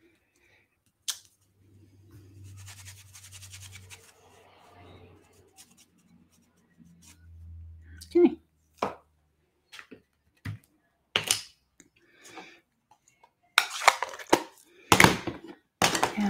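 Handling of craft stamping gear on a desk: a single click about a second in, then scattered sharp clicks and taps of a clear stamp and acrylic block, turning into busier paper rustling and handling near the end.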